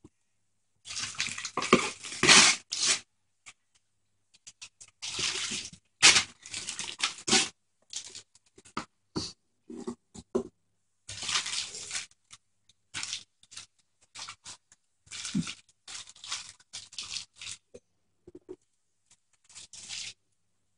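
Wrapping paper being torn and crinkled by hand in irregular bursts as a present is unwrapped.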